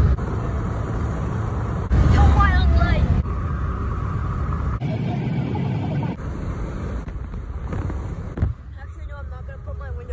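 Road rumble inside a moving car, broken by abrupt edits, with short bursts of a child's voice about two seconds in and again near the end, and a sharp thump shortly after eight seconds.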